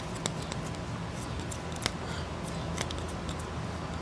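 Faint scattered clicks and rubbing of fingers turning the threaded screw-down lock on a stainless steel chronograph pusher, screwing it down to lock the button, with one sharper click just under two seconds in.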